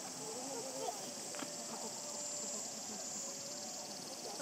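Steady, high insect buzzing, with faint distant human voices underneath.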